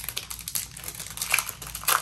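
Foil Yu-Gi-Oh Mega Pack wrapper crinkling and crackling as it is torn open by hand, with two louder crackles in the second half.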